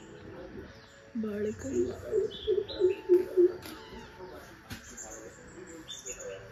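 Birds chirping with short, high calls in a garden. A short run of low, evenly spaced notes sounds about one to three and a half seconds in, and a single sharp click comes near five seconds.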